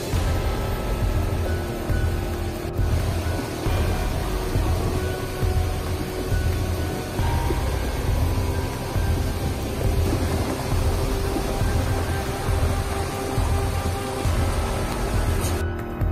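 Background music with a steady low beat and held tones.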